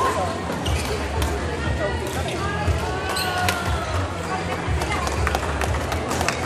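Badminton rally: rackets striking the shuttlecock with sharp, irregular smacks and court shoes squeaking on the floor, over the chatter of a crowded sports hall and background music.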